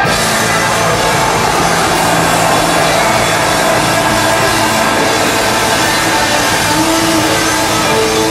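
Live hard rock band playing loud and steady, electric guitar and drums, recorded from the floor of a large concert hall.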